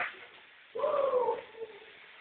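A single meow-like animal call about a second in, lasting under a second and falling slightly in pitch.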